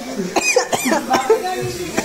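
People's voices in a room, with a few short, sharp vocal bursts in the first second or so.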